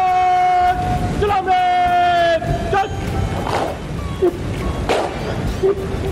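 A parade-ground word of command shouted by the guard commander, with long drawn-out held vowels broken by short pauses over the first two and a half seconds. This is followed by heavy thuds about every three-quarters of a second as the guard moves off.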